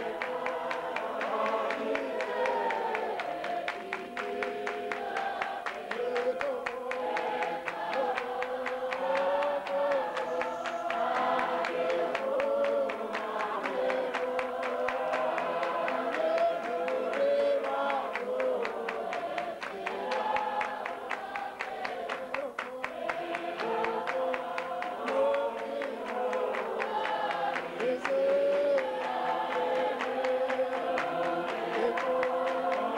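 A congregation singing a hymn together in unaccompanied multi-part harmony, with hand clapping.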